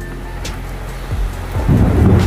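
Rain falling over a rough sea, an even hiss with surf beneath it, joined about one and a half seconds in by a loud, deep rumble.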